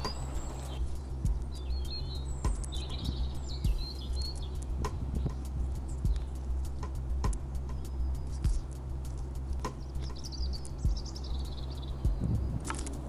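Small birds chirping in short high phrases a few times over a steady low hum, with scattered sharp clicks and taps as a carrion crow pecks at food on a concrete patio.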